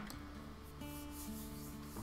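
A hand rubbing and sliding across a translucent paper sheet laid over a pastel drawing: a soft, papery hiss.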